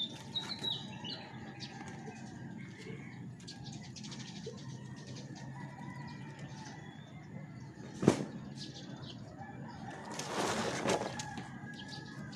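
Chicken flapping its wings in a burst of about a second near the end, with a few short high bird calls near the start. A single sharp knock about eight seconds in is the loudest sound.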